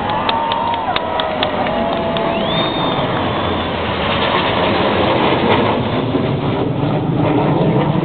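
Jet noise from a low formation flypast of a four-engine Il-76-type jet and escorting fighter jets overhead. It is a broad, steady noise that grows louder and deeper in the last few seconds. Crowd noise sits underneath, with a few sharp clicks near the start.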